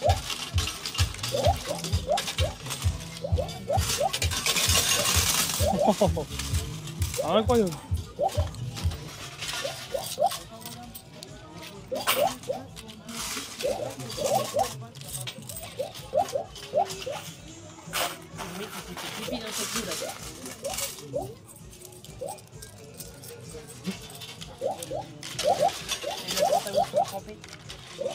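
Coins clinking and rattling at an arcade coin-pusher machine, with a few sharp clicks, over fairground music and background voices. The music has a steady beat that stops about a third of the way through.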